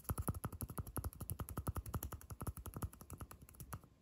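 Fast fingertip tapping on a small plastic cup held close to the microphone, a rapid run of light clicks, about ten a second.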